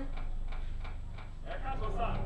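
A fast, even ticking over a steady low hum, fading out about halfway through, with a voice coming in near the end.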